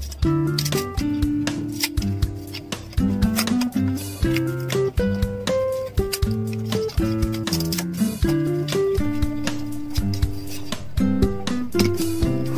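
Background music: a plucked guitar melody of short, stepping notes.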